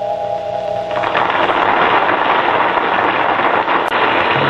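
A held music chord that stops about a second in, followed by a loud, even rushing noise with a faint crackle.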